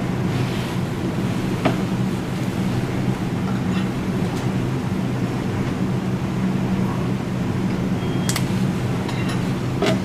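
Steady rushing hum of room ventilation, with a faint click about two seconds in and another near eight seconds.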